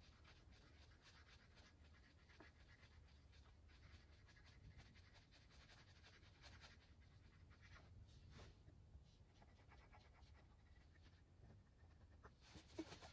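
Faint, steady scratchy rubbing of a wooden axe handle being burnished, working oil and beeswax into the wood.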